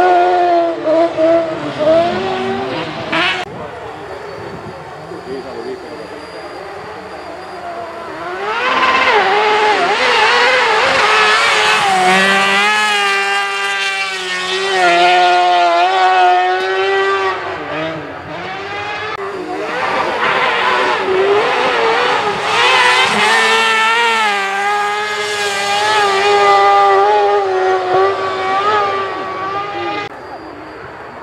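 Rally car engines at race revs on a snowy special stage. One car is loud as it passes close at the start, then the sound drops back for a few seconds. From about eight seconds in it is loud again, the revs rising and falling as a car drives the stage across the field.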